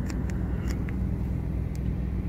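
Moving car heard from inside its cabin: a steady low rumble of engine and road noise, with a few faint clicks.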